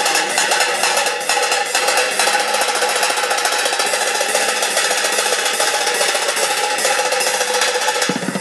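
Drumsticks playing a fast, unbroken roll on upturned metal pots and pans, a dense metallic clatter with the pans ringing steadily underneath.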